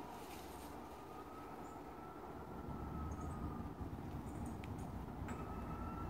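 Quiet outdoor background: a low rumble that swells about halfway in, like distant traffic, with a faint thin steady whine above it.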